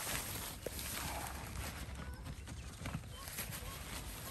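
Handling noise from pitching a nylon tent: fabric rustling and light knocks as the tip of a trekking pole is nestled into the tent's corner eyelet, over a steady low rumble.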